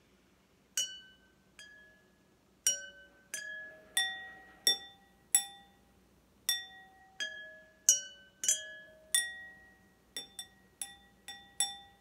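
Stemless drinking glasses holding different amounts of water, tapped one after another with a pencil, each ringing at its own pitch: a water-tuned glass xylophone. About twenty clear strikes form a simple tune, quickening into a fast run near the end.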